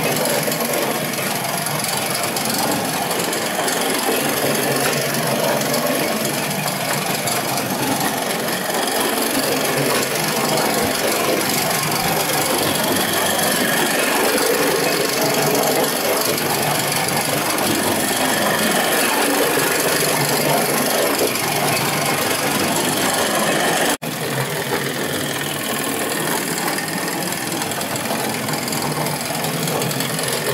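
Small antique Cranko toy tractor running across a wooden floor: a steady mechanical whirr and rattle from its motor and wheels, with a sudden brief dropout about three-quarters of the way through, after which it carries on a little quieter.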